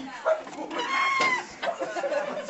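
A high-pitched vocal call, held for about half a second near the middle and bending down at its end, among scattered voices.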